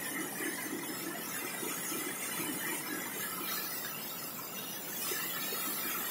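Steady rush of a fast-flowing river tumbling over rocks: an even hiss with no let-up.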